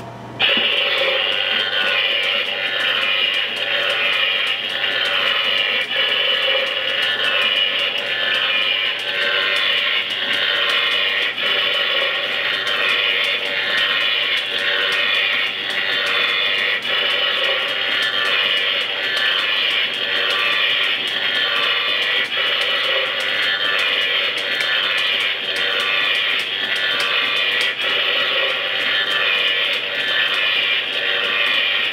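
An animated high-voltage junction box Halloween prop playing its electrical sound effect through its small built-in speaker, switched on by its button: a loud, continuous, crackling and buzzing loop that starts suddenly about half a second in and runs steadily.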